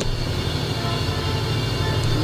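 A steady low hum and rumble with no speech, beginning abruptly as the voice stops and holding an even level.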